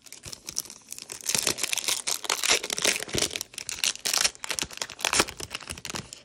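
Foil wrapper of a 2019-20 Hoops basketball card pack crinkling and tearing as it is opened by hand, a dense run of crackles.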